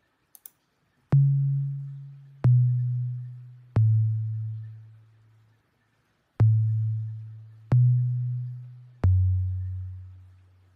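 Logic Pro's 80s Sine Synth retro-synth patch playing solo: six low, pure sine-tone notes, each starting with a click and fading away. They come in two groups of three, with a pause of about a second between the groups.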